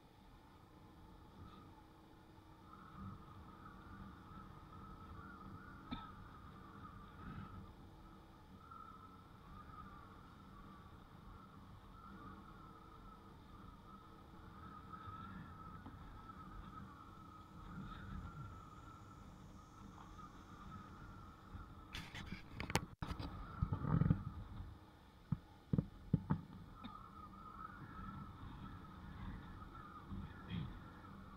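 Motorbike running along a concrete lane, heard faintly, with a low rumble and a wavering mid-pitched whine. A cluster of loud sharp knocks comes about two-thirds of the way through, then a few more single knocks.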